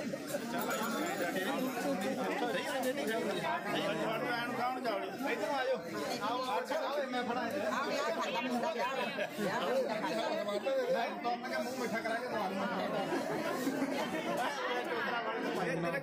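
Many people talking at once: a steady babble of overlapping conversation.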